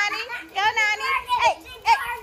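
Young children's high-pitched voices as they play, in several short calls and babbles.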